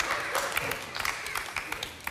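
Studio audience applauding, a dense patter of claps that thins and fades toward the end.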